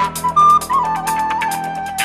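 Wooden recorder playing a short melodic phrase that steps downward and settles on a held lower note, over a funk backing track with a fast, even ticking rhythm.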